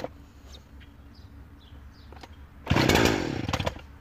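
Husqvarna 359 60cc two-stroke chainsaw pull-started from cold with the choke out: one pull of the starter cord near the end, the engine firing for about a second in a loud burst that then falls away.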